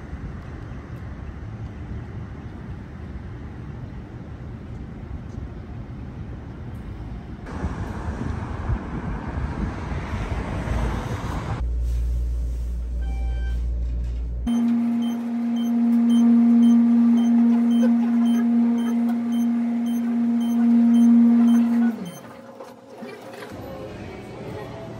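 City street traffic noise, then an elevator ride. First comes a low rumble, then a loud, steady hum with overtones. The hum slides down in pitch as the car slows and stops about two seconds before the end.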